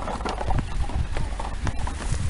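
Footsteps and a small plastic ride-on toy's wheels on snowy pavement: a toddler pushing the toy along, giving irregular scuffs and knocks.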